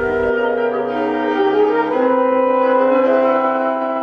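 Trombone and wind quintet playing sustained chords, one line sliding up to a held note about halfway through.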